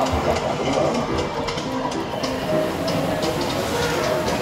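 Busy arcade din: electronic game music and sound effects from the machines over a steady rumble of noise.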